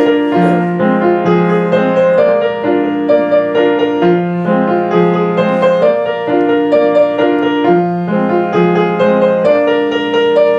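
Upright piano played solo: sustained chords over a low bass line that moves in a repeating pattern.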